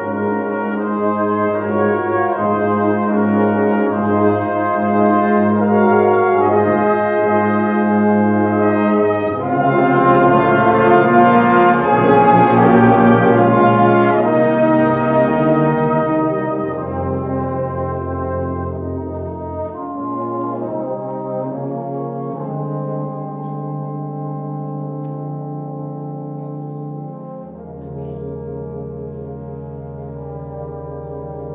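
A brass band of cornets, tenor horns, euphoniums, trombones and tubas playing a slow, hymn-like piece in sustained chords. It swells to its loudest about ten seconds in, then eases down to softer held chords.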